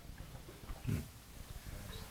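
Quiet room tone with one brief, low vocal sound about a second in.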